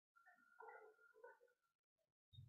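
Near silence: room tone, with a very faint pitched sound in the background for about a second mid-way.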